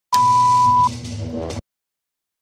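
A steady high beep, the test-card reference tone of TV colour bars, held for most of a second over static hiss and a low hum. The tone stops, the hiss and hum run on briefly, then everything cuts off suddenly.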